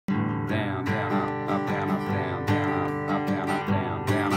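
Acoustic guitar strummed in a steady rhythmic down-and-up pattern, a few strokes a second, ringing one held chord.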